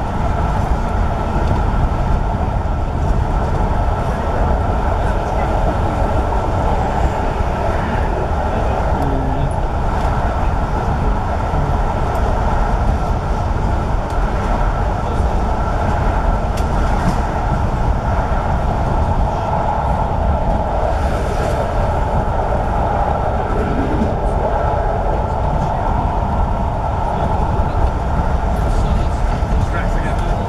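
Steady running noise of a passenger train at speed, heard inside the coach: a continuous rumble and roar of the wheels on the rails.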